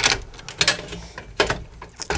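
Plastic pull-out block of a fused air-conditioner disconnect being pushed back onto its terminals, with several sharp clicks and knocks about two-thirds of a second apart as it seats. It goes back in turned round to the off position, so no power passes through the disconnect.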